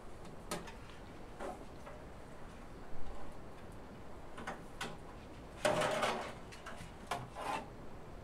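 Sheet-metal back panel and bottom pan of a small electric kiln being moved and pivoted aside by hand: scattered light clicks and rubs, the loudest a longer scrape about six seconds in.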